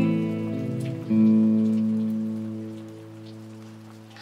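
Acoustic and electric guitars ringing out on a song's closing chords: a last chord is struck about a second in and left to ring, fading away steadily.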